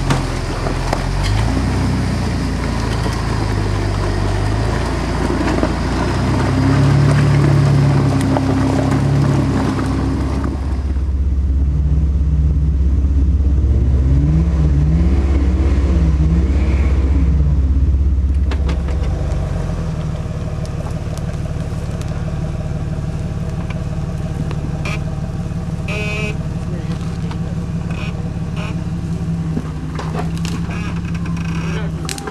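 Jeep engines working at low speed as the Jeeps crawl up a rutted, rocky off-road trail, the engine note rising and falling with the throttle. Around the middle it turns to a deeper, steadier drone with a wavering whine over it, then settles into a steadier engine note.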